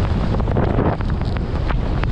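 Wind buffeting the microphone of a skier's camera at speed, over the hiss of skis sliding on snow, with several sharp clicks in the second half.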